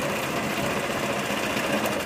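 Small boat's engine running steadily, a fast, even mechanical rattle at constant level.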